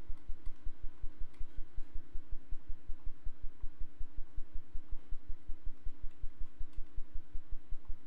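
A low, pulsing hum that beats about six times a second, with a few faint clicks scattered through it.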